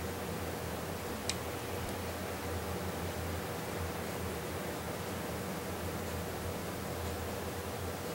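Steady room tone: an even hiss with a low hum, and one faint tick about a second in.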